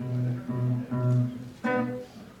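Acoustic guitar playing the opening of a song: a run of low bass notes, then a brighter chord struck about one and a half seconds in.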